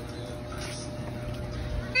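Steady outdoor background noise with a faint held tone and faint distant voices.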